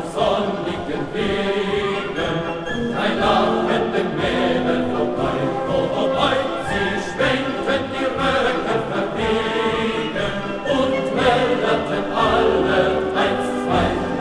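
Choir singing a German soldiers' song with instrumental accompaniment.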